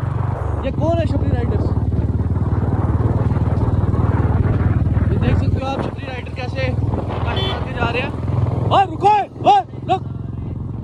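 Royal Enfield Bullet single-cylinder motorcycle engine running under way, heard from the saddle. It eases off a little past halfway, then picks up again.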